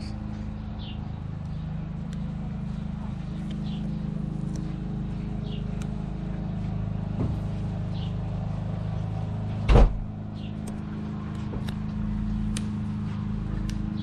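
Steady low hum of an idling engine, with one sharp knock about ten seconds in.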